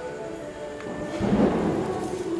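A distant firecracker boom: a low rumble that swells and fades in the second half, over faint background music.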